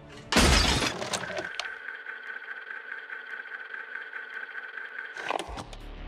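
A small decorative horse figure smashed to pieces: a single loud breaking crash with shattering debris. It is followed by a steady high ringing tone lasting about four seconds.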